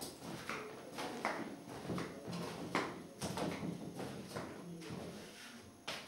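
Footsteps on a wooden plank floor at a slow walking pace: a steady series of soft knocks, about one to two a second.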